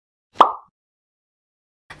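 A single short plop-like pop sound effect about half a second in.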